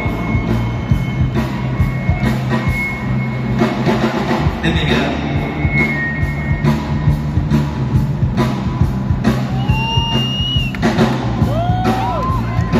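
Live rock band playing an instrumental passage: drum kit keeping a steady beat under electric bass and electric guitar, loud, with a few sliding high notes near the end.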